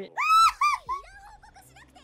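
A woman's short, loud, high-pitched squeal of excitement, followed by quieter giggling that wavers up and down in pitch.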